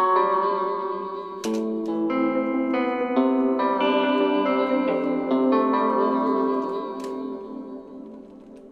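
A trap-beat melody played back on an Omnisphere guitar patch: plucked notes ring over one another, coloured by RC20 wobble and reverb. The notes fade away near the end.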